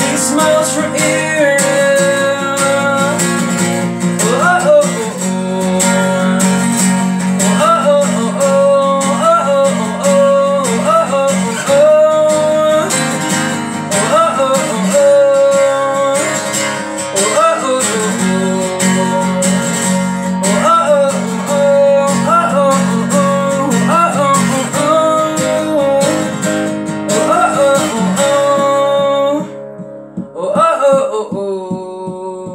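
Acoustic guitar strummed in a steady rhythm through a chord progression, stopping briefly near the end.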